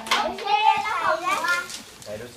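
A young child's excited, high-pitched voice, a continuous stretch of vocalising whose pitch rises and falls, with a sharp click right at the start.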